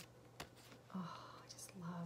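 Tarot cards handled in the hands, a few soft clicks and slides as a card is moved from the front of the deck to the back, with a faint murmured voice about a second in and again near the end.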